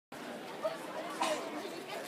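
Distant voices chattering over steady background noise.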